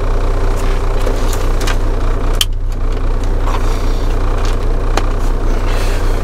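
Semi-truck diesel engine idling steadily, heard from inside the cab, with a few sharp clicks about two and a half seconds in and again near five seconds.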